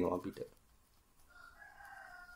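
A faint, drawn-out bird call, one crow of about a second and a half that begins just over a second in and dips slightly in pitch at its end.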